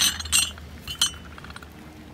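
Vintage glass ashtrays clinking as they are handled, with a few sharp, ringing clinks in the first second or so.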